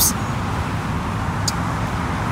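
Steady outdoor background noise of distant road traffic, with one short faint tick about one and a half seconds in.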